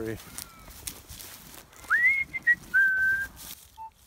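A high whistle-like tone rises and holds briefly, a short blip follows, then a slightly lower steady tone for about half a second. Faint short beeps at a lower pitch repeat about twice a second near the end.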